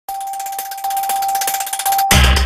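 Electronic logo-intro sound effect: a steady high tone with a fast flutter of high ticks above it, growing a little louder about a second in and cutting off sharply just before the end.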